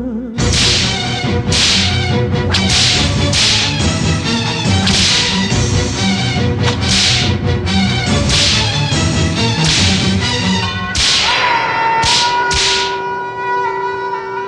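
Whip lashes striking again and again, about one or two a second, over instrumental film music. A long held melodic note comes in near the end.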